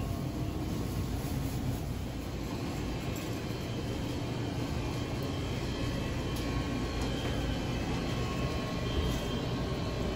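Steady low rumble and hum of grocery store background noise, with a few faint clicks.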